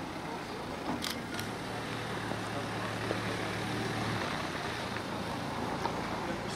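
A heavy truck's engine idling steadily, a low hum that grows stronger for a few seconds in the middle.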